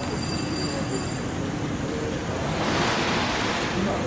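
Steady outdoor background rumble and noise, with a click at the start and a rushing hiss that swells about two and a half seconds in.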